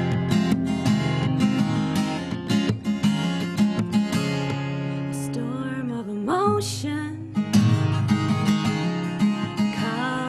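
Steel-string acoustic guitar strummed and picked in a steady song accompaniment; about halfway through, a woman's singing voice comes in over it.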